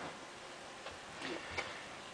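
Quiet room tone with a few faint, short clicks a little after halfway through.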